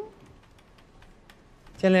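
Faint, scattered keystrokes of typing on a computer keyboard, a few clicks spaced irregularly.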